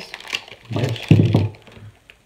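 Crinkling and clicking of a small clear plastic packet being opened by hand. A short, low mumbled voice comes about midway.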